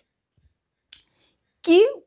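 A single short click about a second in, after a pause, then a woman's voice begins speaking near the end.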